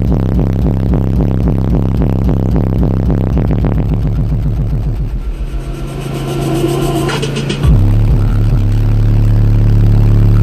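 Bass-heavy music pulses through a truck's system of six 18-inch subwoofers, then eases off about halfway. Near the end a loud, steady low bass note cuts in suddenly and holds.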